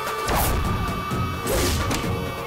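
Dramatic background score with two sudden swooshing impact hits, one just after the start and one about a second and a half in.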